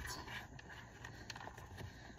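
Faint handling sounds from a seatbelt being tightened through a plastic infant car seat base: soft rustling with a few light clicks and knocks.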